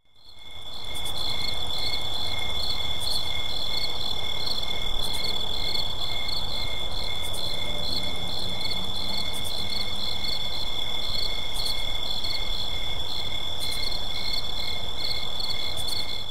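Night ambience of crickets chirping: one high steady trill with a pulsing chirp pattern a few times a second over a low rumble, fading in at the start.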